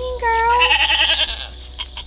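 A Nigerian Dwarf goat bleating once, loudly, for about a second and a half: the call rises at the start, holds, then wavers before it fades.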